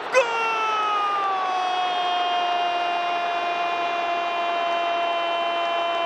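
A football commentator's long held goal shout: one sustained call that slides down a little at the start, then holds a steady pitch.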